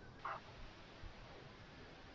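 Near silence: room tone, with one faint, brief sound about a quarter second in.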